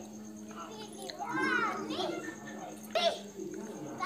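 Children's voices talking and playing in the background, in short bursts, over a steady low hum.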